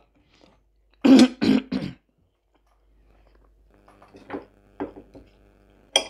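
A woman coughing and clearing her throat, three or four short coughs together about a second in. A sharp clink of cutlery on a plate comes right at the end.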